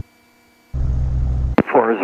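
A light aircraft's piston engine droning low through a cockpit headset intercom. The drone cuts in abruptly after near silence about two-thirds of a second in and cuts off with a click, and a voice starts speaking near the end.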